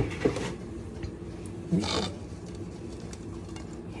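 A sharp knock at the start and a lighter one just after, from kitchenware being handled on the counter, then a brief rustle about two seconds in, over a low steady hum of kitchen room tone.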